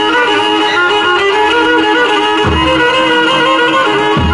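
Pontic lyra (kemenche) playing a lively folk-dance melody, with the daouli drum coming in with regular beats about two and a half seconds in.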